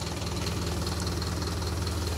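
Diesel engine idling steadily with a low, even hum.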